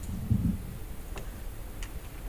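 A quiet pause in a hall: a low steady hum, with a soft low thump just after the start and two faint clicks, one about a second in and one near the end.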